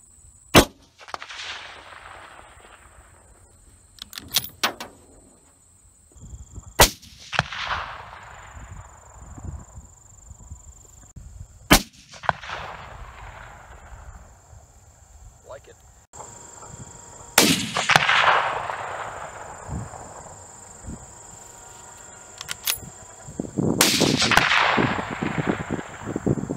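Five rifle shots from a scoped bolt-action Savage Hog Hunter in .308 Winchester, spaced about five to six seconds apart, each cracking sharply and then rolling away in a long echo; the last two echo longest. A few lighter clicks fall between the shots.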